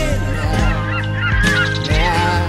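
Gulls calling, a run of short calls in the middle, heard over a song with a steady bass line.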